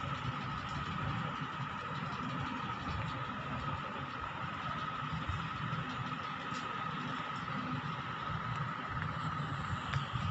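Steady low rumble and hiss with a steady high-pitched whine over it, a mechanical or traffic-like background noise.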